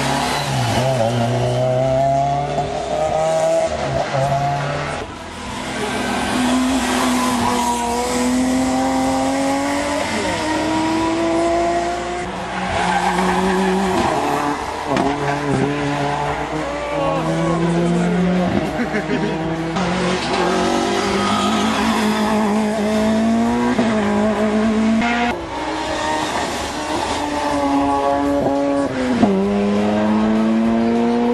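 Rally cars accelerating hard up a winding hill-climb road one after another, each engine note climbing and dropping sharply at every gearshift, several times over, with tyre squeal through the bends.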